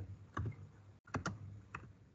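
Computer keyboard being typed on: four separate keystrokes over two seconds, two of them in quick succession.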